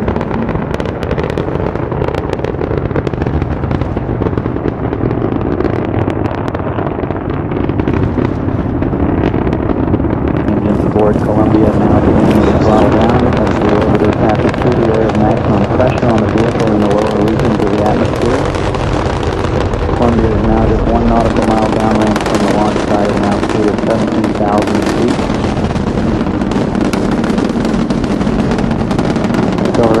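Space Shuttle launch noise: the solid rocket boosters and main engines giving a loud, steady rumble shot through with dense crackle as the stack climbs. Voices can be heard over it from about a third of the way in.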